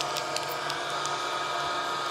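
A steady mechanical hum with several fixed tones, unchanging throughout, with a few faint ticks over it.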